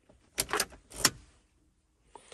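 Car keys jangling in three short clinks within about a second as the key is handled at the ignition cylinder.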